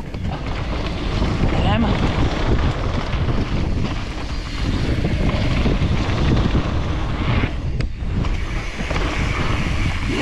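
Wind noise on a GoPro microphone with mountain bike tyres rolling on a dirt trail during a fast descent. It dips briefly about three-quarters of the way through.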